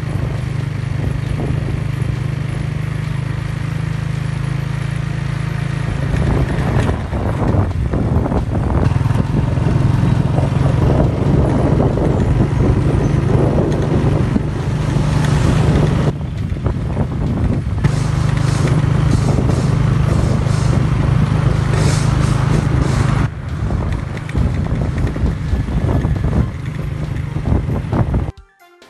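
A motor vehicle's engine running steadily as it drives along a street, heard from on board with road noise and wind buffeting the microphone; the engine sound drops away briefly about halfway through.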